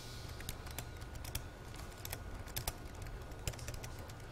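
Laptop keyboard typing: a faint, irregular run of key clicks as short shell commands are typed.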